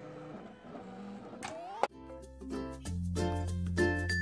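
A Silhouette electronic cutting machine's motors whir faintly as it starts to cut, with a rising whine near the two-second mark. Just after, the sound cuts abruptly to louder upbeat background music of plucked notes over a steady bass.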